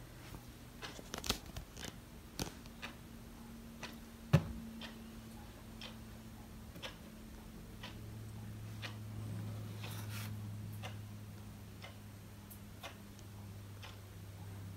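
Quiet room tone with a low steady hum, broken by faint scattered clicks and ticks at uneven intervals and one sharper knock about four seconds in, like a phone camera being handled and moved.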